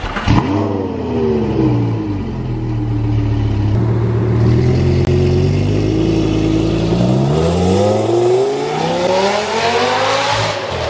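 Lamborghini Gallardo V10 revving up sharply just after the start, with the revs falling back over a couple of seconds and holding steady while the car pulls away. The revs rise again in the last few seconds as it accelerates off.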